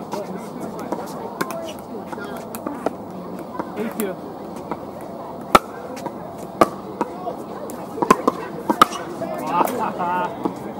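Sharp pops of pickleball paddles striking a plastic pickleball, the loudest about halfway through, then several more about a second apart as a rally goes on, with fainter pops scattered throughout.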